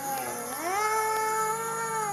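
A long, drawn-out vocal cry: the pitch dips, then slides up about half a second in and holds one steady note for well over a second.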